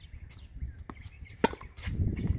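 Sharp knocks of a tennis rally on a hard court, a racket striking the ball and the ball bouncing, the loudest about one and a half seconds in, with lighter ticks around it.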